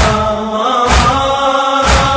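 Voices chanting a Punjabi noha in long held notes, with the slaps of unison chest-beating (matam) about once a second.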